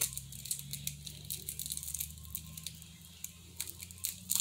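Caramel candy wrapper being picked open by hand: faint, quick, irregular crinkling and tearing.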